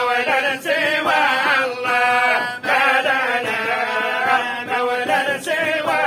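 A group of men chanting an Arabic devotional supplication together in unison, unaccompanied, with short breaks between phrases.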